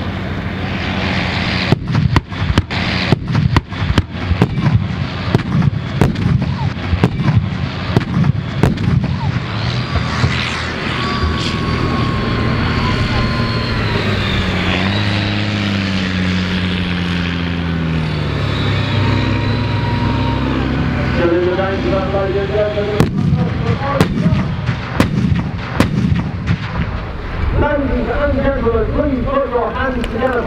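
Pyrotechnic charges going off around CVR(T) tracked armoured vehicles: a rapid string of sharp bangs for several seconds, then a spell of sustained sound with engines rising and falling in pitch, and another run of bangs near the end.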